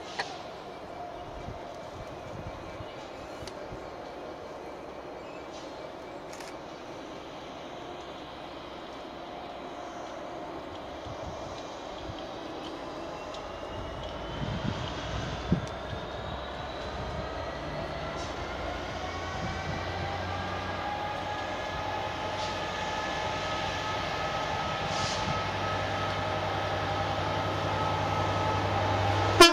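Class 67 diesel-electric locomotive approaching, growing steadily louder: a low engine drone from its two-stroke V12 diesel builds over the second half, with a whine that slowly rises in pitch.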